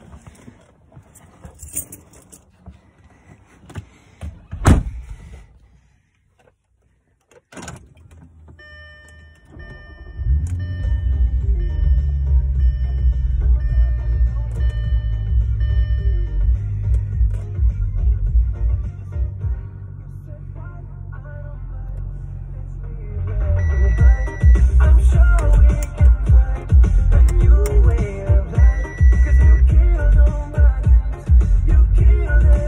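A thunk about four and a half seconds in and a lighter thud about three seconds later, then the Audi's engine starts about ten seconds in and settles into a steady idle. From about twenty-three seconds loud music with a heavy, pulsing bass beat comes in over the idling engine.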